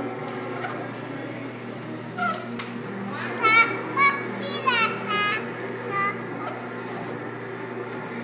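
A young girl's high-pitched excited squeals and sing-song cries, about five short calls between two and six seconds in, some sliding down in pitch. Under them runs a steady low hum.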